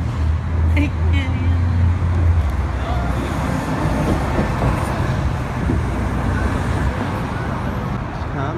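Road traffic noise with a vehicle's low engine hum, which drops away about two and a half seconds in, leaving a steady noisy rumble. Faint indistinct voices come through early on.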